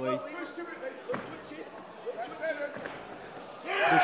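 Faint voices in the arena, with one sharp knock from the boxing ring about a second in.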